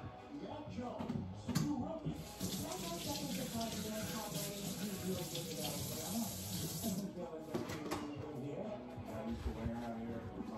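Kitchen sink faucet running, a steady rush of water that starts about two seconds in and is shut off about seven seconds in.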